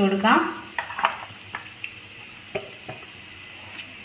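Cooking oil poured from a bottle into an empty non-stick kadai: a faint hiss with a few light ticks in the first three seconds.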